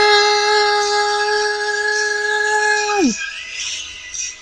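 A woman's sustained sung note, held steady for about three seconds, then sliding down in pitch and breaking off, over a quiet karaoke backing track.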